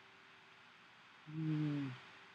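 Near silence with a faint steady hum, then about a second and a quarter in a man's drawn-out hesitation sound, "uhh", held for under a second.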